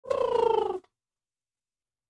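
A single short cry lasting under a second, slightly falling in pitch and raspy.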